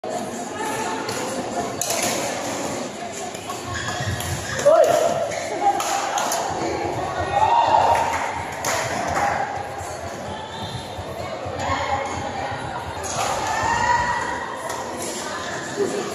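Badminton rally in a large hall: sharp racket-on-shuttlecock hits come every second or so, echoing, with shouts and excited voices from players and spectators rising over them, the loudest about five seconds in.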